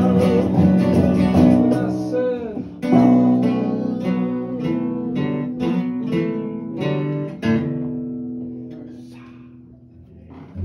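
Acoustic guitar playing the closing bars of a tune: a run of picked notes, then a last chord that rings out and fades away.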